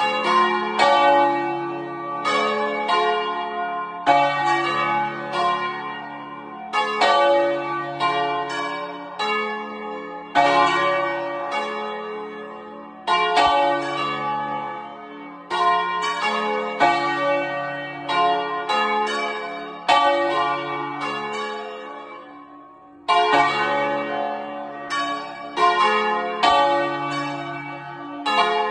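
The four largest bells of a cathedral peal, cast by Crespi in 1753 and tuned D-flat, F, A-flat and the D-flat an octave up, swung full circle by hand (Italian distesa ringing). Their clangs overlap in rounds of several strikes about every three seconds, each round ringing on as it dies away, loud and close from inside the belfry.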